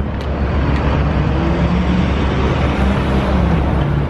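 Steady city traffic noise: a continuous low rumble under an even hiss.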